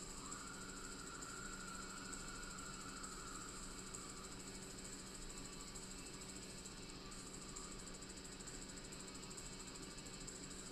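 Faint, steady background hiss and electrical whine with a high tone running through it. No distinct event stands out.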